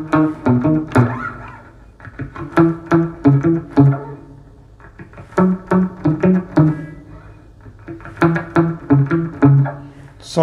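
Clean electric guitar on a semi-hollow body, playing a single-note reggae line on the lower strings. The line runs alongside the bass line without following it, and is heard as four short phrases of plucked notes with brief gaps between them.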